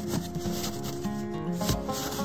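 A plate scraping and scooping through packed snow in a series of short rubbing strokes, over background music with held notes.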